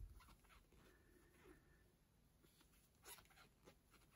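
Near silence, with faint scratchy rustles of yarn being drawn through stitches by a metal crochet hook, and a couple of soft ticks near the end.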